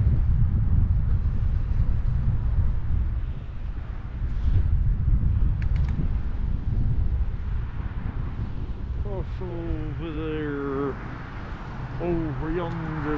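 Wind buffeting the microphone of a camera on a moving bicycle, a steady low rumble. About nine seconds in, a man's voice hums a wordless, wavering tune for about two seconds.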